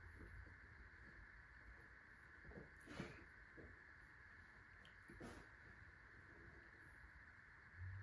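Near silence: room tone, with two faint short sounds about three and five seconds in.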